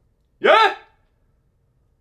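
A man's single short, rising, questioning exclamation "예?" ("huh?"), about half a second in.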